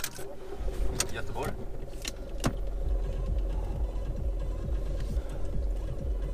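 Volkswagen car engine started with the ignition key: a click of the key, then a steady low idle rumble that sets in about half a second in, with a few more clicks over the first few seconds.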